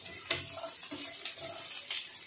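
Steel spoon stirring whole shallots, onion chunks and whole tomatoes frying in oil in a nonstick pan: several light scrapes and knocks of the spoon over a steady sizzle.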